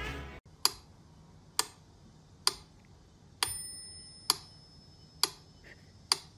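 Mechanical metronome ticking steadily, a little more than once a second, with one bell-like ring about three and a half seconds in.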